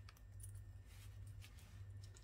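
Faint small clicks and handling sounds from a zipper slider being worked onto the end of a continuous zipper tape by hand, over a low steady hum.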